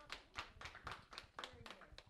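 Applause from a room audience at the end of a talk, many quick claps with a few voices mixed in.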